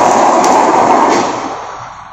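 Dry chemical powder fire extinguisher discharging through its hose nozzle: a loud steady hiss that begins to fade about halfway through.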